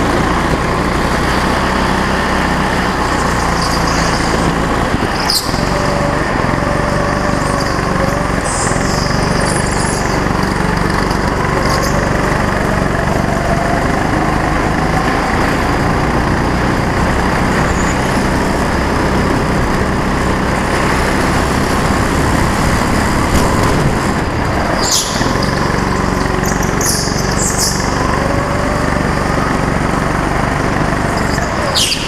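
Go-kart's small petrol engine running close to the microphone, its pitch rising and falling as the kart speeds up and slows through the corners. A few brief high squeals and two sharp knocks, about five seconds in and near twenty-five seconds, cut through it.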